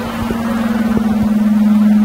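A steady low-pitched hum on one held pitch, growing gradually louder.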